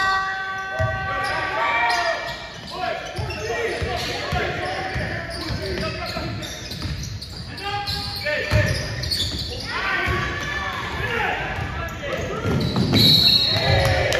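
A basketball game in an echoing gym: the ball bouncing on the hardwood floor, players' feet and shouting voices. A steady squeal sounds for the first two seconds, and a short, high referee's whistle blows about a second before the end, stopping play.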